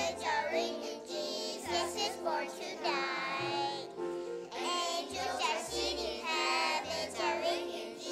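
Children's choir singing a melody together, accompanied by a string orchestra holding sustained notes beneath them.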